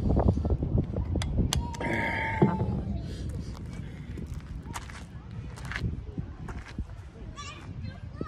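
Park ambience: a low wind rumble on the microphone, strongest in the first few seconds, scattered footsteps on gravel, and faint distant voices of children playing, one rising clearly near the end.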